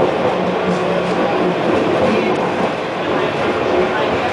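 Bombardier Innovia Metro Mark 1 people mover car running along its guideway, heard from inside the car: a steady running noise of steel wheels on the rails with a low motor hum.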